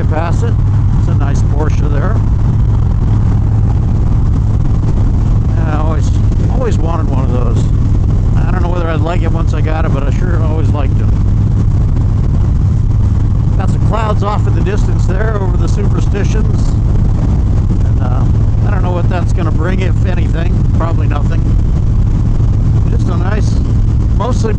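Harley-Davidson Dyna Street Bob's Twin Cam 103 V-twin running steadily at highway cruising speed, a constant low drone, with a man's voice talking over it at intervals.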